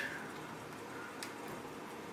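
Quiet room tone with one faint, short click a little after a second in.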